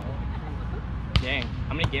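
A volleyball smacked by a player, one sharp hit about a second in and a lighter hit near the end, with players' voices calling out between them.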